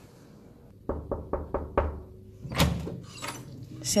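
Knuckles knocking on a hotel room door, a quick run of about five knocks, followed a second later by a single heavier thump.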